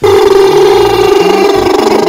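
Advert jingle with a loud, held buzzing sound laid over its bass line for almost two seconds, starting and stopping suddenly.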